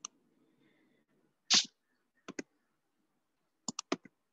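A brief noisy burst about a second and a half in, followed by sharp clicks in quick pairs, like a computer mouse being clicked, a pair near the middle and three near the end.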